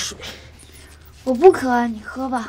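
Speech: a line of dialogue begins a little over a second in, after a brief lull with only low background noise.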